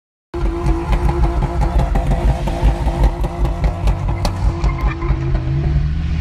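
A car engine running hard over music, the engine's pitch climbing as it revs up near the end.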